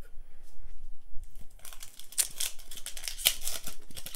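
Foil wrapper of a Pokémon trading-card booster pack crinkling and tearing as it is opened by hand: a dense run of crackles from about halfway through, after a few quieter handling sounds.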